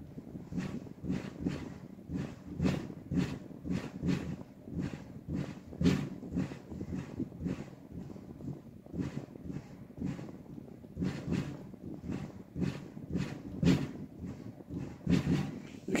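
Bass drum played very softly with a felt beater (feathering) in a jazz swing pattern, under a steady run of light stick strokes on a ride cymbal.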